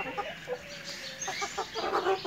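Chickens clucking: a few short clucks and one longer drawn-out call about half a second in.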